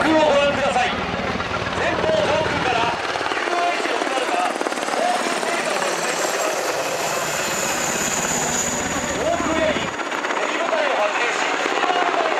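UH-60JA Black Hawk helicopter flying low overhead: a deep, steady rotor beat with a high turbine whine that comes in around the middle as it passes directly above. The deep beat falls away about ten seconds in as it moves off.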